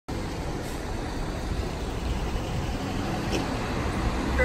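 Road traffic going by: steady tyre and engine noise from a pickup truck and cars passing close.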